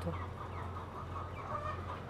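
A flock of chickens clucking faintly in the background, over a steady low hum.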